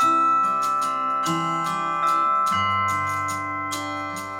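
Acoustic instrumental music: sustained ringing tones over a low line that moves to a new note about every second and a quarter, with light, evenly spaced taps and jingles from a hand-held frame drum with jingles.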